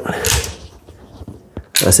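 Metal parts of a Hatsan Escort semi-automatic shotgun being handled as the charging handle and bolt are worked out of the receiver: a short scrape near the start, then a single sharp click about a second and a half in.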